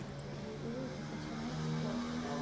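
Background music with held low bass notes that shift pitch in steps.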